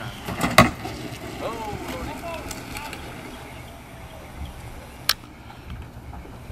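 Faint outdoor voices over wind noise on the microphone, with two sharp knocks: a loud one about half a second in and a lighter one near the end.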